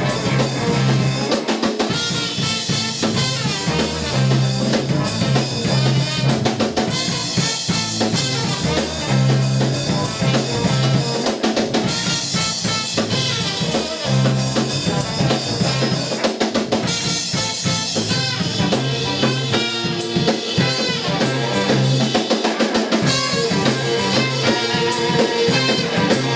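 Live band playing an instrumental groove: drum kit keeping a steady beat under electric bass, electric guitar and trumpet.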